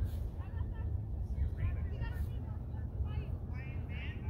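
Distant, unintelligible voices of youth soccer players and onlookers calling out across the field, in short high-pitched bits, over a steady low rumble.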